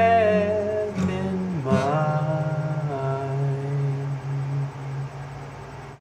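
A man's voice holding the wordless final notes of a song over an acoustic guitar: one long note, then a second that steps down and fades out near the end.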